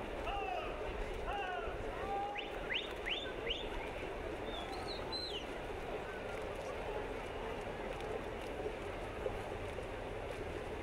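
Open-air crowd murmur at a swimming race, over the splash of swimmers. In the first half, several short bird calls (quick rising and falling whistles and chirps) stand out, ending in three sharp rising whistles.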